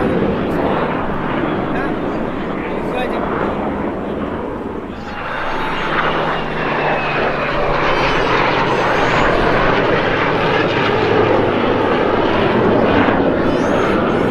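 Jet aircraft engine noise from an airshow flyover, dipping about five seconds in and then swelling louder again toward the end.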